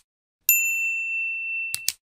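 A single bright bell-like ding about half a second in, ringing for just over a second, then two quick clicks near the end: the chime and tap sound effects of an animated subscribe-and-like button end card.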